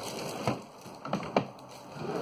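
Three short knocks or clicks over faint room noise, the last and sharpest about three-quarters of the way through.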